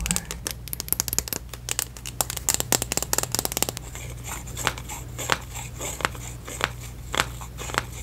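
Long fingernails tapping fast on a clear plastic lipstick tube, a dense run of quick clicks that thins out about four seconds in to slower, separate taps.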